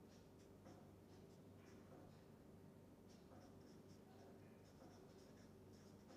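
Faint scratching of a marker pen writing on paper, a string of short strokes, over a low steady hum.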